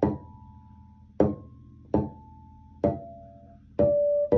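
Electric bass guitar sounding natural harmonics on an open string: five plucked, bell-like tones at different pitches, each ringing briefly and fading before the next.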